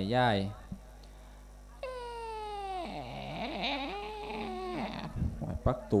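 A single drawn-out, high-pitched cry or wail, about three seconds long. It sets in suddenly on a high note that sags slowly, then slides lower and wavers before stopping.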